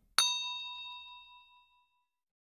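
A single bright bell ding, the sound effect for the notification bell being switched on, struck once a moment in and ringing with several tones as it fades away over about a second and a half.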